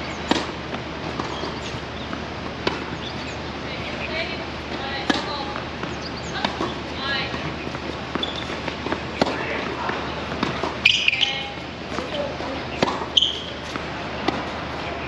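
Tennis rally on an outdoor hard court: sharp pops of the rackets striking the ball about every two seconds, starting with a serve just after the start, with the ball bouncing on the court between strokes.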